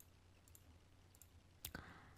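A few faint computer-mouse clicks over a low, steady room hum, with one sharper click near the end.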